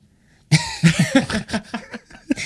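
Laughter starting about half a second in, a quick run of short breathy laughs.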